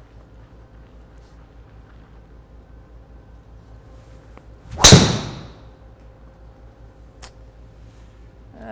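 A golf driver striking a teed ball once, a sharp crack about five seconds in that rings and trails off over about half a second; the golfer puts the shot down to a low strike on the face and a bad swing. A faint tick follows a couple of seconds later.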